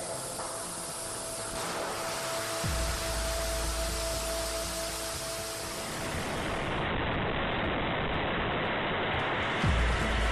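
A 500-ton-class liquid-oxygen/kerosene rocket engine test firing: a dense, steady rushing noise, with a heavy deep rumble that comes in a little under three seconds in. It is mixed with music.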